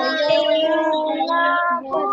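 Children and a woman singing a prayer together in long, held notes, heard through a video call's audio.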